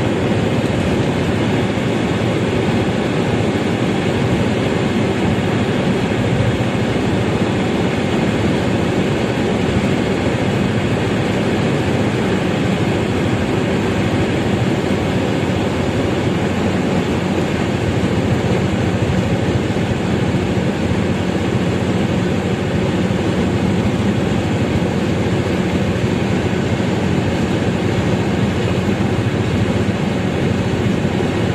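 Steady road and engine noise inside a vehicle's cabin while it drives at highway speed.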